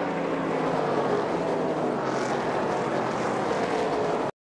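NASCAR race trucks' V8 engines droning steadily on the track after the finish, with the pitch easing down a little as they slow.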